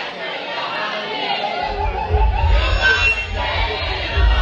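Crowd of voices chattering and shouting over party music, with a deep bass line coming in about one and a half seconds in.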